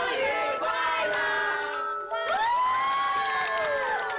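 A group of children and adults cheering and clapping together, with one long drawn-out shout held from about halfway through to near the end.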